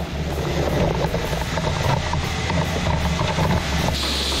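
Compact excavator's diesel engine running steadily as its hydraulic grapple picks up cut soapstone cylinders.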